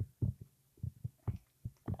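Soft, irregular low thumps, about four a second, from a plush toy being handled and bounced on a bed.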